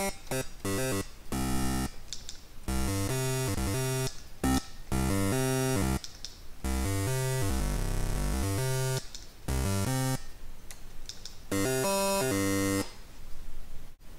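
Patchblocks mini-synthesizer playing a run of buzzy, harmonic-rich notes from a waveform built from eight randomly generated step positions. The notes vary in pitch and length, with short gaps and a brief pitch slide in the middle, and stop shortly before the end.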